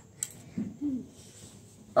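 A single sharp click, then two short, soft hums or murmurs from a young girl, with quiet room tone between them.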